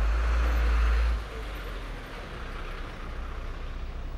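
Street traffic with a city bus close by: a loud, deep engine rumble with a hiss over it drops away about a second in, leaving steady traffic noise.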